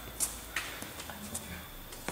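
A few sharp knocks, the loudest about a quarter second in and fainter ones about half a second and a second later, over a faint murmur.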